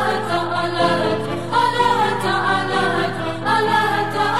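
Assyrian song playing: voices singing a wavering melody over long, sustained low notes.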